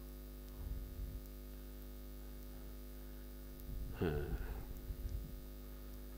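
Steady electrical mains hum in the sound system, with a short vocal sound with falling pitch about four seconds in.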